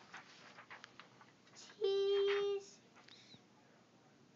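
A young boy's voice holding one steady note for just under a second, about halfway through, amid faint rustling and small knocks of movement.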